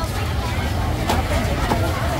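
Indistinct chatter of a crowd of adults and children over a steady low rumble, with a brief click about a second in.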